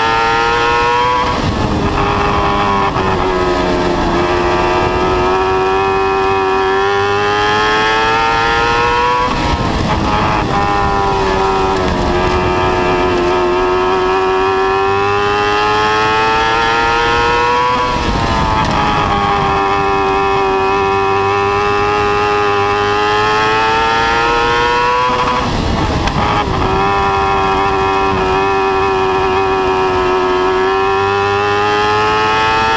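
Dwarf race car's motorcycle-derived engine running hard at high revs, heard from inside the car. Its pitch dips briefly with a rougher burst of noise about every eight seconds as the driver lifts for the turns, then climbs steadily again down each straight, lap after lap, four times.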